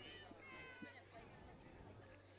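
Near silence on the broadcast feed: a low steady hum, with a faint, distant voice about half a second in.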